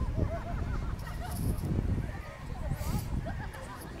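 Indistinct chatter of people nearby, with wind rumbling on the microphone throughout.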